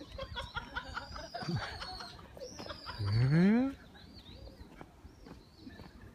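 People laughing in short repeated bursts, then a voice rising steeply in pitch in a drawn-out exclamation about three seconds in.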